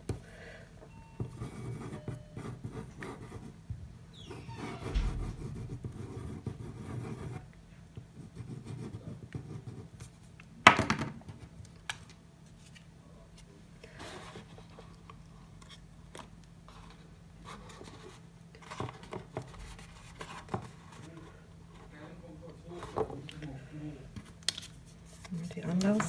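Paper and card being handled on a table: design paper sliding, rustling and being pressed onto a card gift box, with one sharp click about ten seconds in, over a steady low hum.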